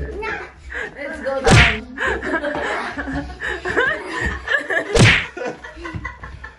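Two sharp smacks about three and a half seconds apart, a braided willow Easter switch (pomlázka) striking, the first about a second and a half in and the second near the end, among laughter and voices.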